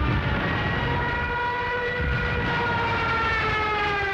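Junkers Ju 87 Stuka dive siren screaming in a steady held wail that sags slightly in pitch near the end, over the rumble of the diving aircraft.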